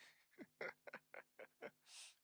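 A man's quiet, breathy laughter: a string of short soft chuckles, ending with an in-breath.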